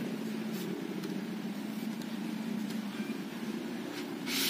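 Steady low mechanical hum, even in level throughout, with a faint tick about half a second in.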